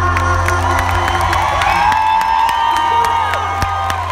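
Live concert heard from within the audience: the band holds a closing chord over a steady deep bass while the arena crowd cheers, whoops and claps.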